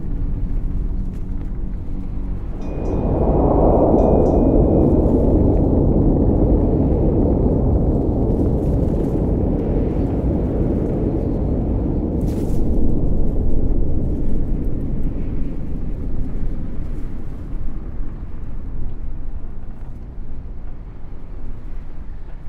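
Dark ambient drone track: a deep steady rumble, joined about three seconds in by a swelling wash of noise that slowly fades away, with a faint thin high tone held briefly as it begins.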